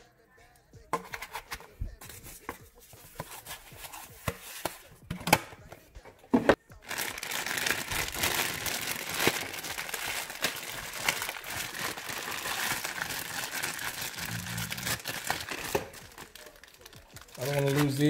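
A clear plastic parts bag being handled and torn open. First come scattered clicks and rustles, then about a third of the way in a long, continuous stretch of crinkling plastic.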